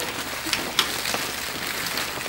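Rustling and crinkling of plastic-wrapped packs of peat fuel briquettes being lifted off a stack and carried, with a few sharp clicks and knocks, the clearest about half a second and just under a second in.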